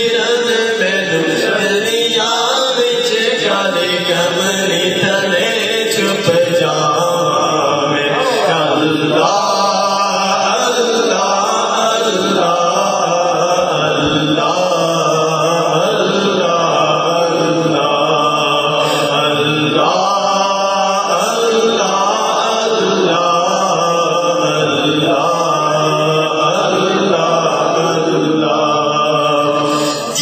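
A male voice singing a naat, a devotional Urdu poem, in a sustained, melismatic chant-like style into a microphone, without instruments.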